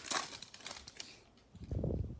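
Foil wrapper of a baseball card pack crinkling as it is torn open, mostly in the first second, with a brief dull thump near the end.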